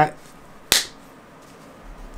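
A single sharp finger snap about two-thirds of a second in, standing in for the crossbow shot in a spoken account of firing at a deer.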